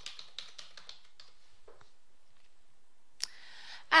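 Typing on a computer keyboard: a quick run of key clicks in the first second or so, then sparser and fainter clicks.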